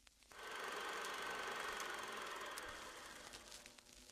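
Film projector sound effect: a steady, rapid mechanical clatter over a hiss. It starts just after the beginning and fades away near the end.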